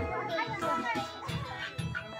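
Dance music with a thumping beat plays under the chatter and shouts of a crowd of children and adults. The beat drops away near the end.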